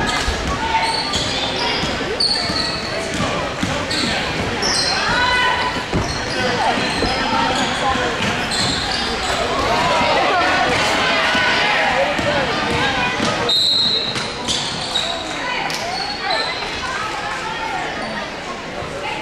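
Gym crowd noise during a high school basketball game: many spectators talking and calling out, with a basketball being dribbled and sneakers squeaking on the hardwood court. The sound echoes in a large gymnasium.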